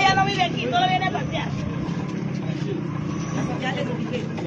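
Several people's voices, one clear for about the first second, then fainter talk overlapping, over a steady low rumble.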